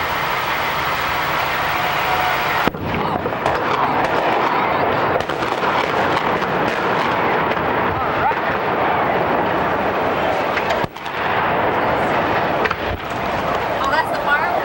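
A large staged film explosion goes off about three seconds in, with a sharp blast. It is followed by a long stretch of loud noise with scattered cracks and pops as the fireball and debris burn.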